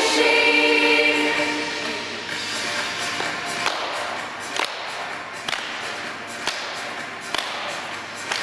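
Girls' choir singing, ending about two seconds in. After that, slow single hand claps about once a second over a quieter background.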